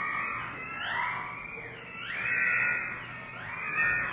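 Electric guitar played through live electronics: a run of pitched tones that each slide upward and then hold, about one every second and a quarter, swelling in loudness with each rise.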